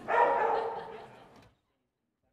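A dog gives one drawn-out, pitched bark in a large hall. It fades over about a second, then the sound cuts off abruptly to silence.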